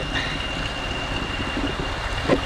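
Diesel locomotive engine running steadily while it is coupled on to carriages: a low rumble under a steady rushing noise.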